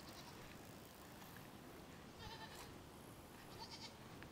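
Near silence, with one faint goat bleat a little over two seconds in.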